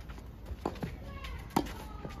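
Tennis rally on a clay court: two light knocks, then one sharp racket-on-ball hit about one and a half seconds in.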